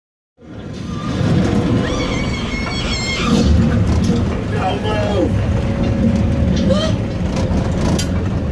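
Open-sided tour tram running, a continuous low rumble heard from on board, with passengers' voices over it.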